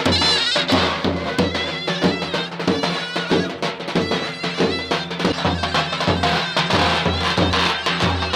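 Live davul and zurna playing a folk dance tune: a shrill, wavering zurna melody over regular beats of the big double-headed davul drum.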